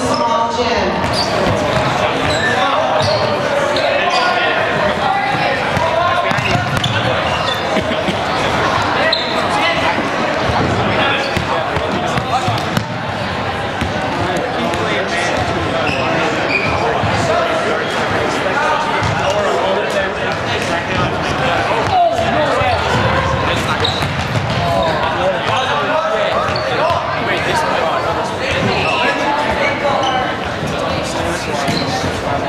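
Players' voices calling and shouting in a gymnasium, with a ball bouncing repeatedly on the hardwood floor during a game of handball.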